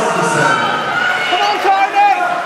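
Voices of spectators shouting and cheering in a large hall, with one loud shout near the end.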